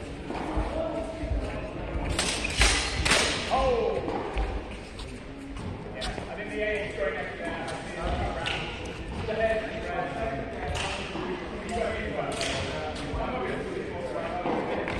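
Knocks and thuds from a longsword sparring bout in a large hall over background chatter: a quick run of three sharp impacts a little after two seconds in, then single ones spread through the rest.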